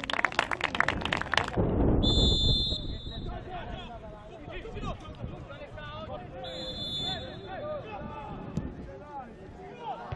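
Football pitch ambience: a burst of clapping at the start, then players and spectators shouting, with a whistle blown twice, each for about a second.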